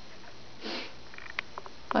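A short sniff, a brief hiss of breath drawn through the nose, a little over half a second in, followed by a single light click.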